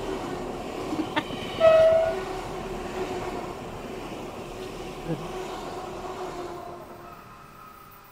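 DB class 423 S-Bahn electric multiple unit passing close by, its running noise fading as it moves away. A short horn note, the loudest sound, comes about one and a half seconds in, just after a click.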